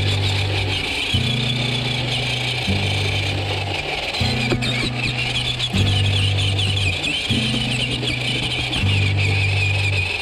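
GMADE Komodo GS01 RC truck's electric motor and gears whining, the pitch rising and falling with the throttle as it drives. Background music with low notes that change about once a second plays underneath.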